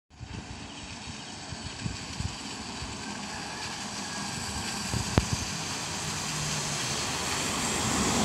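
Approaching DLTB Co. bus, its engine and road noise growing steadily louder as it nears. One sharp click about five seconds in.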